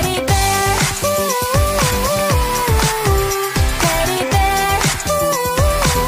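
Instrumental section of a K-pop dance track: a bright synth lead plays a short hook that steps up and down and repeats, over a steady beat of deep, pitch-dropping kick drums and crisp percussion, with no vocals.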